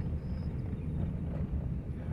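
Steady low rumble of a car's engine and tyres, heard from inside the moving car.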